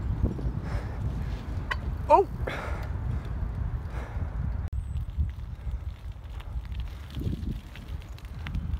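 A 1996 Dyno Air BMX bike rolling over asphalt: steady tyre rumble mixed with wind rumbling on the microphone, with a few light clicks.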